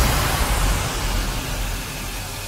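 Electronic dance music transition in a hardstyle mix: the kick drums have dropped out and a hissing noise wash fades down, with a low bass rumble beneath it.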